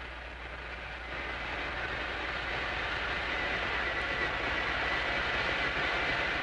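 Hydrophone recording of an ARB boat's engines turning at 600 rpm, heard underwater as a steady rumbling noise that grows louder over the first couple of seconds, with a faint steady whine near the end. Below 800 rpm this underwater sound cannot be told apart from a fishing boat's engine.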